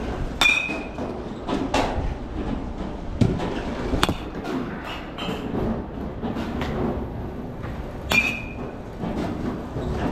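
Metal baseball bats striking pitched balls in nearby batting cages: irregular sharp pings every second or two, a few ringing briefly, over a steady background din.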